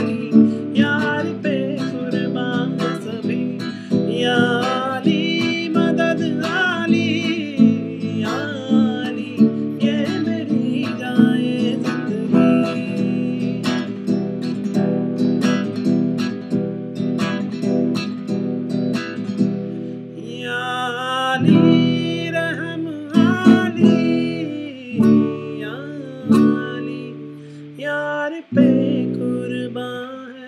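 Acoustic guitar strummed in a fast, steady rhythm on open chords, with a man singing along in Hindi.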